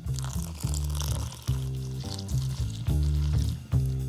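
Background music with a rhythmic bass line, over which water pours in a thin stream into a glass bowl of powdered gluten, a hissing splash that fades after about two seconds.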